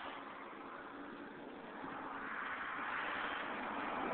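A passing road vehicle: a steady rush of tyre and engine noise that swells from about halfway in as it draws closer.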